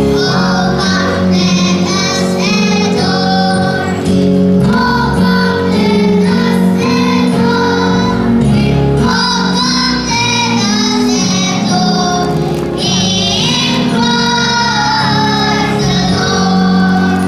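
A children's choir singing together over an instrumental accompaniment, with steady low backing notes under the voices.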